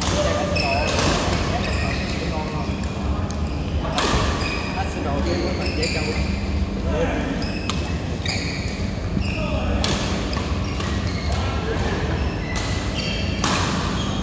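Badminton doubles rally: sharp racket-on-shuttlecock hits at irregular intervals, with shoes squeaking on the court mat between shots, over a steady hum of the hall.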